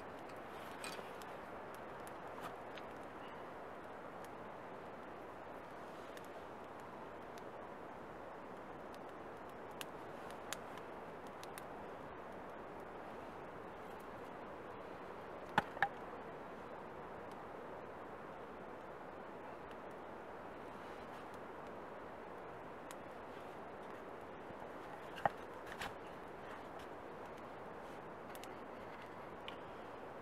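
Campfire of soaked wood burning with a steady hiss and scattered sharp crackles, the loudest pair about halfway through; the wet wood makes it smoke heavily.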